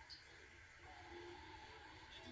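Near silence: the TV's soundtrack is faintly heard across the room, with quiet steady music tones coming in about a second in.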